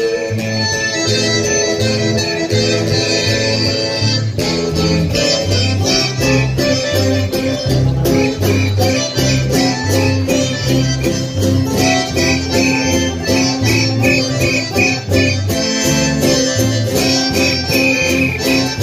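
Live band playing Andean carnival dance music: accordion and guitar over a steady, even bass beat with a light regular percussion tick.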